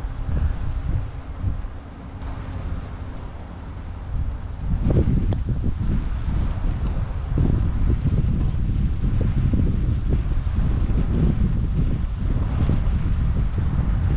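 Wind buffeting the microphone in gusts, a low rumble that grows stronger about five seconds in.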